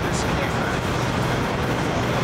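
Steady city street traffic noise, a constant low rumble of passing cars, with faint voices in it.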